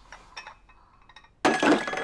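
Porcelain teacup knocked over onto a wooden table: a few faint clinks, then a sudden clattering crash about one and a half seconds in, ringing briefly.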